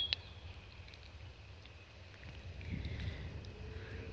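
Wind buffeting the microphone outdoors: a low, uneven rumble that grows louder in the second half.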